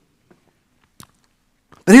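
A pause in a man's speech: near silence with a single faint click about a second in. Right at the end his voice starts again.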